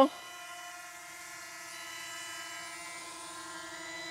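MJX Bugs 19 EIS mini drone's motors and propellers giving a steady whine of several tones as the drone descends on return-to-home and hovers low over its landing pad.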